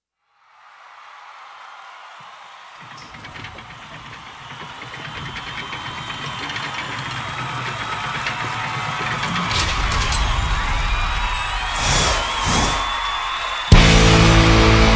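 Intro of a heavy rock song: a noisy swell fades in from silence and grows slowly louder, with a low rumble joining and a high gliding tone near the end. Just before the end, the full band crashes in with drums and distorted guitar.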